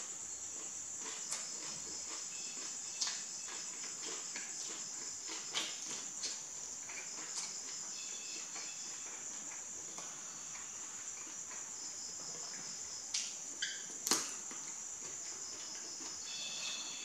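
Eating sounds: scattered small clicks and crunches of chewing and handling food, the sharpest about 14 seconds in, over a steady high-pitched background trill.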